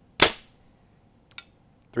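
A 70 lb compound bow, the Bowtech Carbon Zion, firing an arrow: one sharp crack of the string and limbs at release that dies away within about a quarter second. A faint short click follows about a second later.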